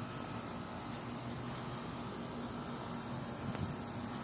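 Steady, even outdoor drone of insects, a high continuous buzz, over a faint low hum.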